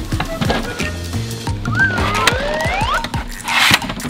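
Background music with a steady beat, overlaid with an edited sound effect: two rising whistle-like glides about two seconds in, then a short whoosh near the end.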